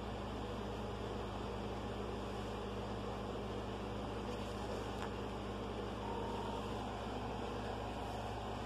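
Steady low hum with a background hiss, and a faint short tone about six seconds in.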